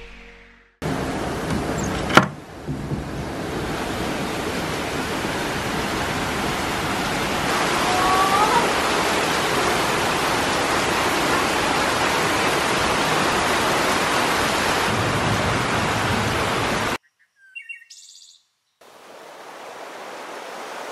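Heavy tropical rain pouring steadily, with a single sharp crack about two seconds in and a brief bird call midway. The rain cuts off suddenly near the end, and a fainter wash of surf starts just before the end.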